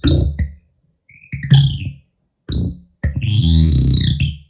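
Guitar-pedal feedback loop through phaser, tremolo and ring-modulator pedals, self-oscillating with no input: stuttering bursts of electronic noise and squealing tones that cut in and out with short silences between. Near the end a longer burst holds a low buzzing tone under a bright high band.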